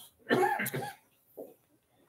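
A person coughing: a short, loud burst of coughing about a third of a second in.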